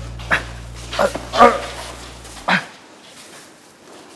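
A man groaning and gasping in pain after being hit: four short strained cries. A low steady hum runs under them and stops about two and a half seconds in.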